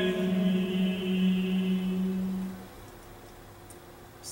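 A recording of a men's choir singing chant: the final note is held steady and then stops about two and a half seconds in, leaving only quiet room sound.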